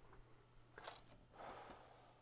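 Near silence: faint room tone with a low steady hum and a few faint clicks.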